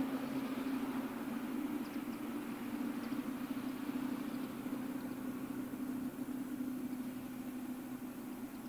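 Distant two-car ÖBB class 5047 diesel railcar running along the line, heard as one steady low engine hum that slowly fades.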